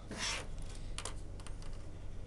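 Pen scratching across paper: one long stroke in the first half second, then a shorter, sharper scratch about a second in and a few faint ones after, over a steady low hum.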